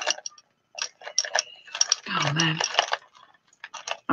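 Light clicks and clinks of necklace beads and shells knocking together as tangled necklaces are pulled apart by hand, with a brief low murmur of a woman's voice about two seconds in.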